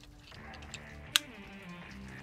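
A single sharp click about a second in, from handling the fillet knife with its interchangeable blade, over faint background music.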